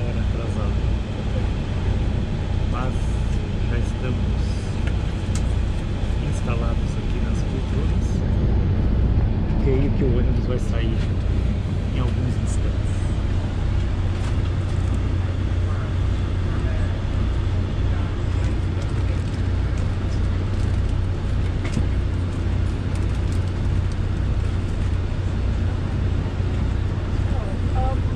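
Coach bus diesel engine idling, heard from inside the cabin: a steady low hum with a fast, even pulse. Passengers talk faintly in the background.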